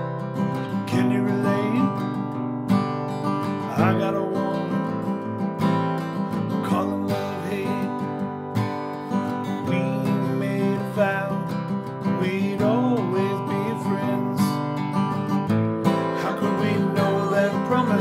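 Steel-string acoustic guitar strummed through the song's chords, moving from C toward A minor seven, with a man's voice singing over it at times.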